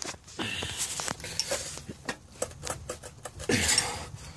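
Wrench tightening the drive shaft's flange nuts at the rear differential: a run of irregular metal clicks and taps.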